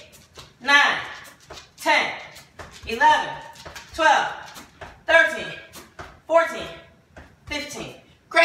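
A woman's voice counting out exercise reps, one short word about every second.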